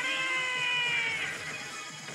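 Yoshimune 3 pachislot machine's game audio during a BIG bonus: music with a long pitched sound effect that starts at once and glides slightly down for about a second.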